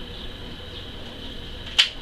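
Low steady room noise with one sharp click near the end.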